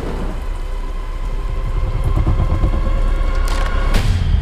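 Film-trailer sound design: a deep, steady rumble under a high sustained drone, with two sharp hits near the end.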